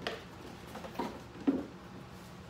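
Cardboard box packaging being handled and pulled about: three short knocks and rustles, the loudest about one and a half seconds in.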